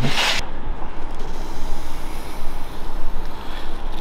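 Steady low rumbling background noise with a faint low hum, after a brief hiss at the very start.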